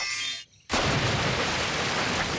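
Cartoon magic-spell sparkle, a shimmering chime that stops about half a second in, then after a short pause a sudden steady rush of gushing water as a flood pours out through a doorway.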